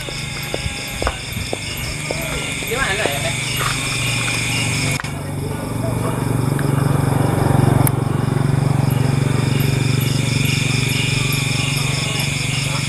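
Night insects chirping steadily in an even, repeating rhythm over a low motor hum that swells in the second half, with one sharp click about five seconds in.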